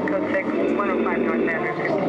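Indistinct voice over a steady low hum through a club PA during a band's live set, with quick up-and-down pitch glides and no clear beat.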